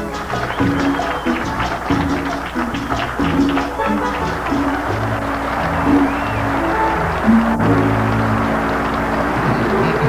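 Grupera band music from electric guitars and a drum kit, with a steady run of bass notes.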